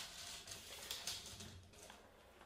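Faint handling noise with a few light ticks from a steel tape measure being laid and held along a wooden slab, fading away toward the end.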